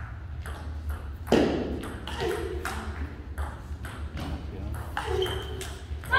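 Table tennis rally: the ball clicking sharply off the rackets and the table in a quick, uneven run of hits.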